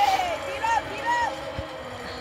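Young children's high-pitched voices on a playground: a falling call at the start, then two short rise-and-fall calls about half a second apart.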